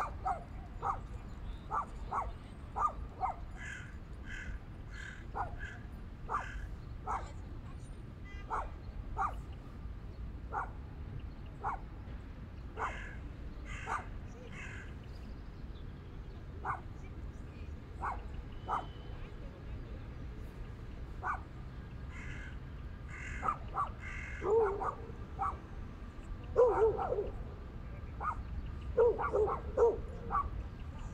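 Birds calling in short, repeated calls throughout. Near the end, dogs bark in quick clusters over a steady low rumble.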